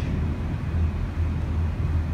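A steady low rumbling hum in the room, with no speech over it.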